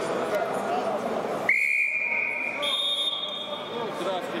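Wrestling referee's whistle: one long, steady blast about a second and a half in, signalling the wrestlers to start. A second, higher-pitched whistle sounds briefly over its tail, and hall chatter runs before the whistle.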